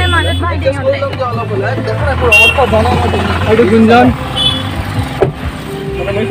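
Low steady hum of a Maruti Suzuki Alto's engine running, heard from inside the cabin under people talking.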